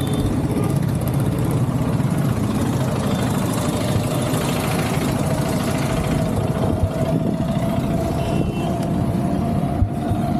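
Motorcycle engine idling steadily, with road traffic noise.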